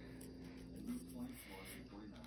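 A person's faint voice: a low held hum or murmur with no clear words.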